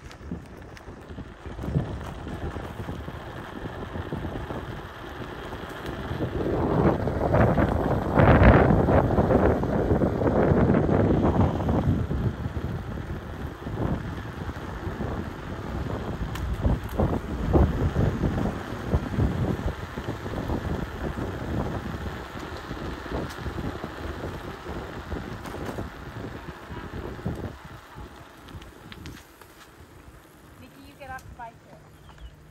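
Wind buffeting the microphone and bicycle tyres rolling over a gravel track, loudest from about six to twelve seconds in, with scattered knocks and rattles over the rough surface.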